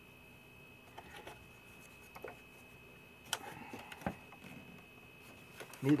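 A few light clicks and taps of hard plastic and metal parts being handled as the blower cover on a Sanitaire commercial vacuum's base is worked loose, the loudest a little past the middle, over quiet room tone.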